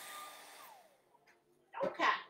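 Hand-held hair dryer blowing steadily on wet acrylic paint, then switched off about a second in. A brief knock near the end.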